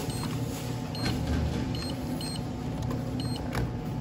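Checkout-counter background: a steady low hum with several faint, short electronic beeps at uneven intervals and a couple of light clicks.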